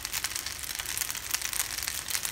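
Fusilli pasta frying in a hot pan: a steady sizzle with dense, rapid crackles.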